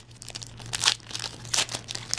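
Foil wrapper of a Pokémon booster pack crinkling as it is handled and opened, in a few sharp crackles.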